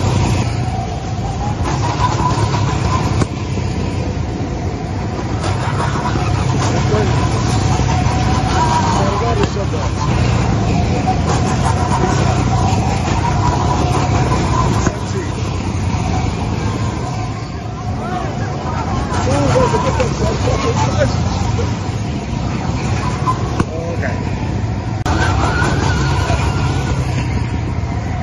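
Gas go-kart engines running as karts climb a steep ramp, a steady mechanical hum, with people talking nearby.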